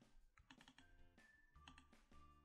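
Near silence: faint clicking, with very quiet background music holding a slow run of single notes.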